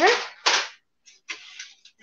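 Tubes of yellow paint being handled: faint rustling and light clicks, after a short breathy hiss about half a second in.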